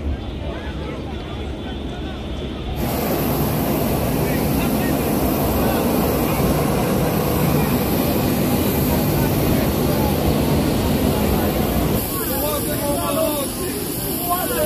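Jet airliner engines running on an airport apron: a steady loud rush with a high whine that starts about three seconds in, after outdoor voices. The rush eases slightly near the end, where voices are heard again.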